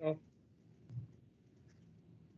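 A brief murmur of a person's voice, then a single soft click about a second in, over a steady low background hum.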